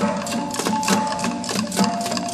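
Fast percussion music: sharp strikes about five a second over held ringing tones, the tone dropping to a lower pitch near the end.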